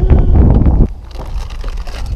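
Wind buffeting the microphone with a loud low rumble that cuts off sharply under a second in, leaving a quieter background with faint knocks.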